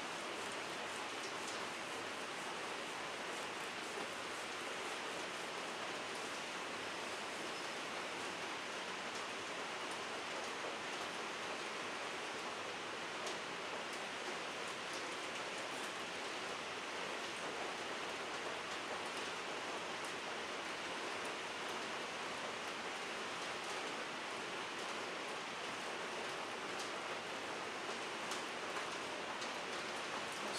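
A steady, even hiss with a few faint soft ticks, no pitch and no rhythm.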